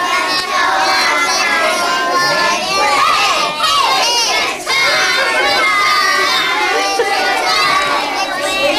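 A group of young children singing and shouting together, many high voices overlapping loudly, with a few voices sliding up and down in pitch about three to four seconds in.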